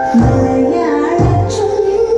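Malayalam film song playing: a high singing voice over instrumental accompaniment, with a low bass note about every second and a half.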